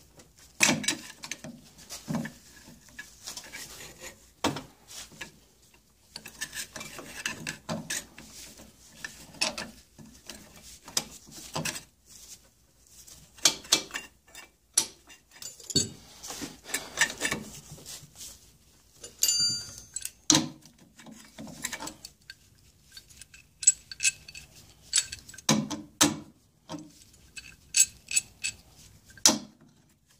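Steel pipe wrench clinking and knocking against the outboard gearcase's driveshaft and housing as it is fitted, taken off and set back on: irregular metallic clanks, with one brief ringing clink a little past the middle.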